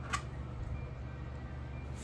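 Steady low background hum with one light click shortly after the start, as an M.2 SSD is picked up and fitted toward the M.2 slot of a PCIe adapter card.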